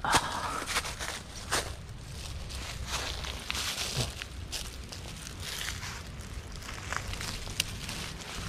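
Dry leaf litter and twigs crackling and rustling with irregular snaps, as someone moves through the undergrowth on a forest floor.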